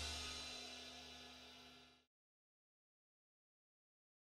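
The final chord of a rock band track, with a cymbal, ringing out and fading away, dying out about two seconds in.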